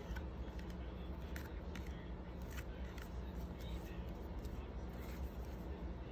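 Baseball trading cards being handled, with a few faint clicks and rustles as cards are slid and flipped, over a steady low hum.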